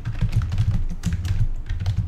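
Computer keyboard being typed on: a quick, continuous run of key clicks as a word is entered.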